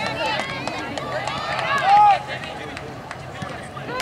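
Soccer players and spectators shouting and calling out across the field, several voices overlapping, with one loud call about two seconds in.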